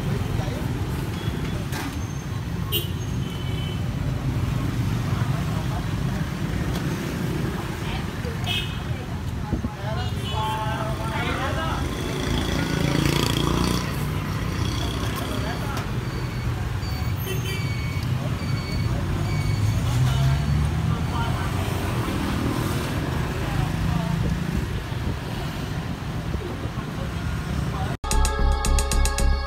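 Steady city street traffic, mostly motorbikes running past, with voices talking in the background.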